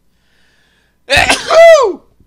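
A person sneezing once, loud and sudden, about a second in, the pitch falling away at the end.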